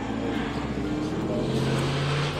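Engine hum of a passing motor vehicle: a steady drone that grows slightly louder toward the end.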